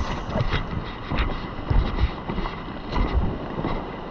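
Wind buffeting the camera microphone in an uneven low rumble over a steady hiss, with a few short knocks scattered through.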